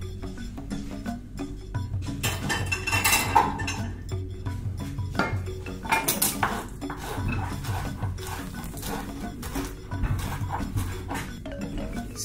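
Background music over clinks and scrapes of utensils against a ceramic plate as food is served onto it. The clatter is loudest a few seconds in and again about halfway, when a knife works on the plate.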